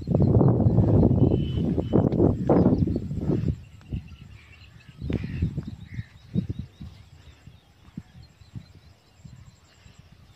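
Wind rumbling on the microphone, strongest for the first three seconds or so, then fading to quieter outdoor ambience with scattered light knocks and faint bird chirps.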